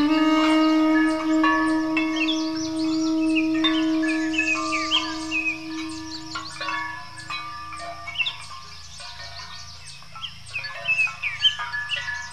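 An Armenian duduk holds a long low note that fades away about two-thirds of the way through, over birds chirping throughout and sheep bells ringing.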